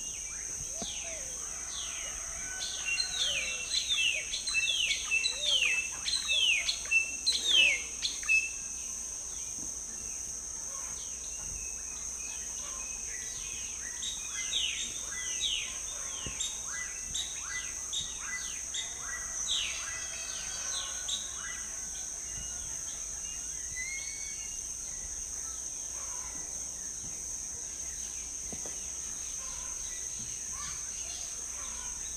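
Outdoor ambience of small birds chirping in rapid runs of short descending notes, over a steady high-pitched drone. A loud flurry comes from about two to eight seconds in, and a quieter one from about fifteen to twenty seconds in.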